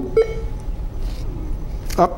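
A short pause in a man's speech, filled by the studio's low, steady hum and room tone, with a faint hiss about a second in.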